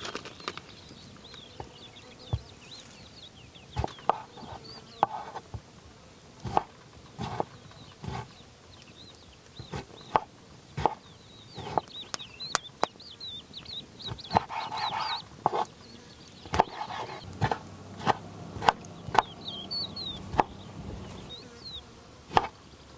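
Kitchen knife slicing tomatoes on a wooden cutting board: sharp taps of the blade reaching the board, about one a second at irregular intervals. Small birds chirp behind it.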